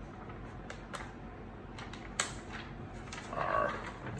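Light handling of a plastic-backed heat transfer vinyl sheet: faint scattered clicks and rustle, with one sharper click a little past halfway.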